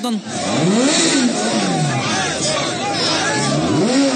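An engine revving up and dropping back twice, about a second in and again near the end, amid a crowd's overlapping voices.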